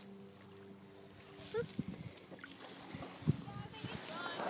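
Handling noise from a small camera being passed between two people in a kayak: rustles and short knocks on the microphone, the sharpest about three seconds in. A faint low steady hum sits underneath for the first half.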